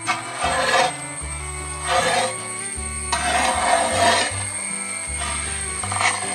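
Wooden spatula scraping and stirring grated coconut as it dry-roasts in a large aluminium pot, in about four scraping strokes at uneven intervals. Background music with low sustained chords runs underneath.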